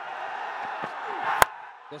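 Stadium crowd noise under a single sharp crack of a cricket bat striking the ball, about one and a half seconds in.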